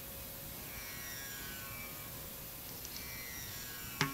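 Low steady hiss and hum of an old concert recording with faint held tones in the background, between pieces of a Carnatic concert.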